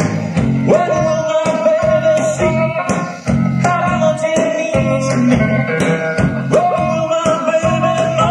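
Live rock band playing a slow song on electric guitar, bass and drums. A lead line holds long notes that bend up into pitch, once about a second in and again near the end, over a steady bass and drum beat.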